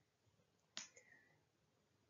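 Near silence, with one short, faint click about three-quarters of a second in.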